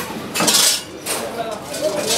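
A thin stainless steel sheet curled into a cylinder is slid and turned by hand over a steel rail, the metal scraping and clinking against the steel, with a louder scrape about half a second in.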